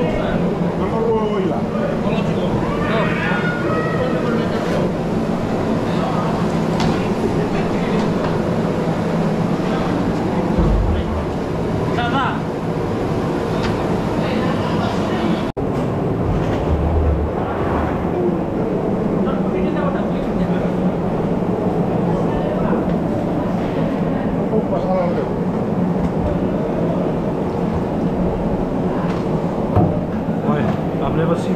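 Crowd of people talking at once in a busy work area, over a steady low mechanical hum.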